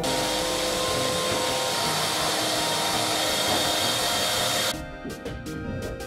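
Shop vacuum running steadily while its hose is worked along the wooden roof boards, sucking up dust and straw; the noise stops abruptly near the end.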